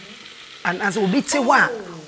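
Food frying in a pan and being stirred, a soft sizzling haze, overlaid from under a second in by a woman talking, whose voice is the loudest sound.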